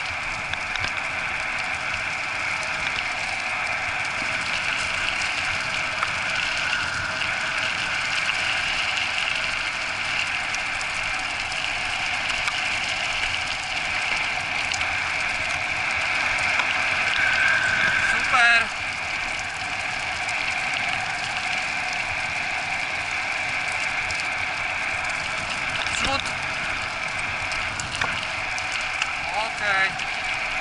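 Steady rolling noise of a dog-training cart's wheels running over a gravel road behind a four-dog husky team, with a brief sharp squeak about two-thirds of the way through.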